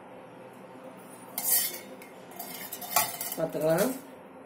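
Metal cookware clattering: two short clanks, one a little over a second in and another about three seconds in.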